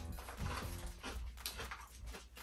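A person biting and chewing a crunchy corn stick snack, soft crunches and mouth sounds.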